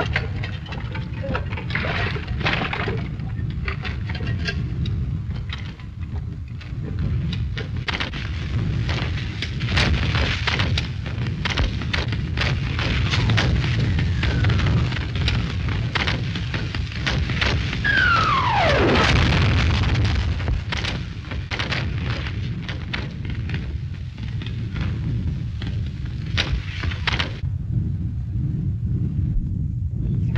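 Artillery bombardment on an old film soundtrack: a steady low rumble under a dense crackle of shell bursts and gunfire, with a shell's whistle falling in pitch about two-thirds of the way through. The crackle stops shortly before the end, leaving the rumble.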